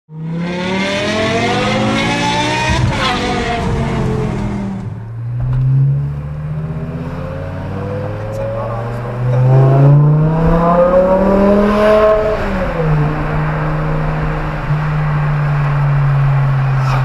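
BMW M car engine heard from inside the cabin under hard acceleration: the revs climb for about two and a half seconds, then fall away as the throttle is lifted. After a few seconds of low running it revs up again about ten seconds in, drops back, and settles into a steady cruising note.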